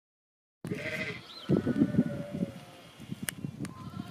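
Sheep at a gate: bleating, with rapid crunching of guinea pig crunch pellets being chewed, and a short bird chirp, all starting about half a second in after silence.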